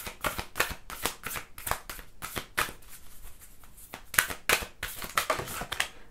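Tarot cards being shuffled by hand: a run of quick, irregular slaps and flicks of the cards, thinning out briefly in the middle before picking up again.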